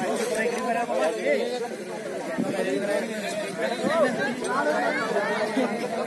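Several men talking over one another: overlapping crowd chatter with no single voice clear.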